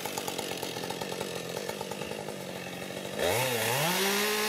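Two-stroke chainsaw idling with a fast, even rhythm, then revving up near the end and holding at a higher steady pitch.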